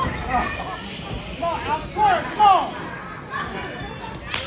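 Several people shouting short calls, with a couple of loud yells about two seconds in, over the general noise of a crowded room.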